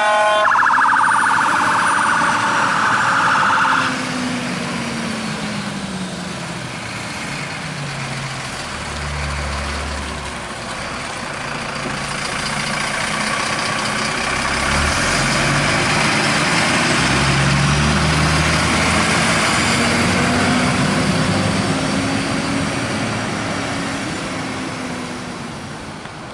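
Fire appliance siren sounding in a fast pulsing pattern, cutting off about four seconds in. After that the Mercedes water carrier's diesel engine revs up and drops back several times as the truck pulls away, fading near the end.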